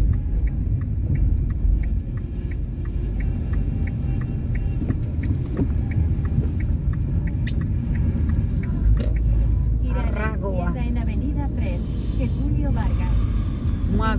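Low, steady rumble of engine and tyres inside a moving car. For the first several seconds a light ticking repeats at an even pace, two to three ticks a second. Brief voices come in near the end.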